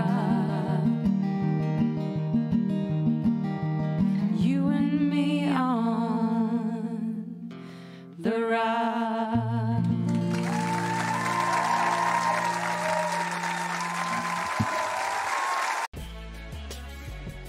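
Closing bars of an acoustic duet: two women's voices holding long notes with vibrato over strummed acoustic guitars, fading out a little past seven seconds in, then one more held sung note. From about ten seconds in, applause takes over until it cuts off suddenly at the end.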